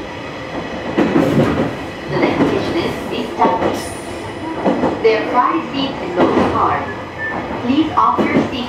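Commuter train running along the track, heard from inside the driver's cab, with a recorded on-board passenger announcement playing over the running noise.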